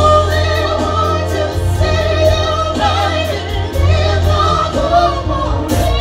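Live band playing: two male vocalists singing together over electric bass, keyboards and drums, with a heavy bass line and a steady drum beat.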